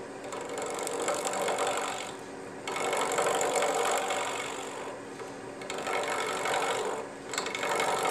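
Wood lathe running with a steady hum while a skew chisel cuts into the spinning wood blank. The cutting noise comes in about four passes, each a second or two long.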